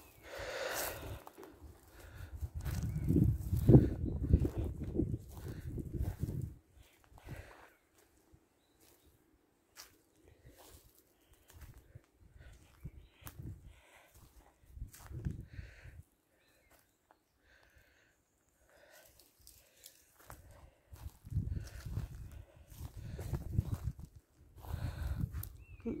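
Footsteps on a woodland path littered with dry leaves and twigs, with scattered small cracks and rustles. Low rumbling noise on the microphone is loud for the first six seconds and returns near the end, with a quieter stretch between.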